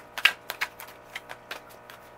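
A deck of tarot cards being shuffled by hand: a run of quick, irregular card clicks and slaps, the loudest just after the start.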